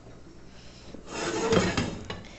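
A pot being handled on a gas stove: a rubbing, scraping noise that starts about a second in and lasts about a second.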